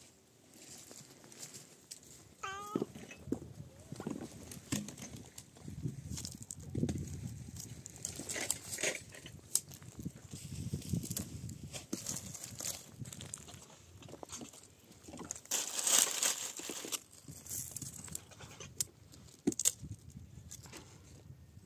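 Dry twigs and brush being snapped, broken and rustled by hand, with footsteps on stony ground, in a string of sharp cracks and rustles, the loudest about three-quarters of the way through. A short high-pitched call sounds once about two and a half seconds in.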